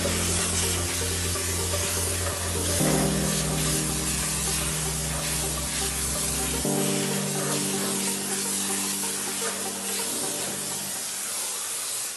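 Steady hiss of steam jetting from the Zepter Tuttoluxo 6SB Plus cleaner's nozzle as it passes over a ceramic basin, with background music underneath.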